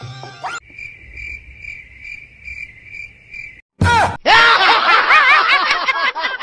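A cricket-chirping sound effect pulses steadily for about three seconds. It breaks off, and after a sudden loud burst comes a loud, fast, warbling sound effect of overlapping rising and falling squeals.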